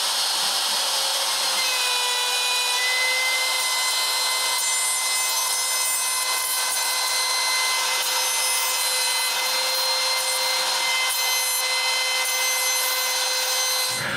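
Trim router spindle on an Inventables CNC machine running with a steady whine while its large bit carves the roughing pass into a pine board, with a continuous hiss of cutting.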